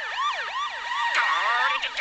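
Cartoon sound effect of police sirens, several overlapping, each yelping up and down in pitch about three times a second.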